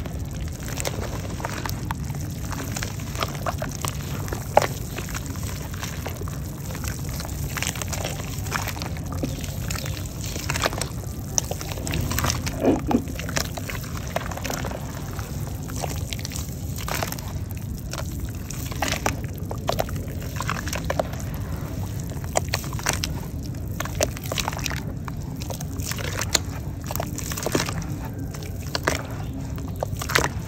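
Hands kneading and stirring crumbled red mud in a basin of water: the wet slurry squelches and sloshes with frequent small splats and pops, over a steady low background hum.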